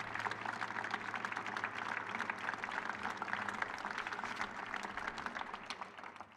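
Audience applauding: dense, steady clapping that starts to die down near the end.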